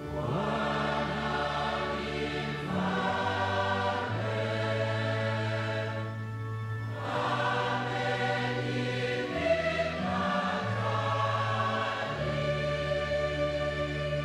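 Choir singing a psalm setting, with held low bass notes beneath that step to a new pitch every couple of seconds. The voices pause briefly about six seconds in while the low notes carry on.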